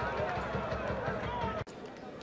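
Open-air football pitch ambience: several voices calling out over a low, uneven rumble. About three-quarters of the way through, the sound drops out abruptly and comes back quieter.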